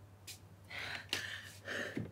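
Several short breathy gasps in quick succession, about four of them, after a faint click.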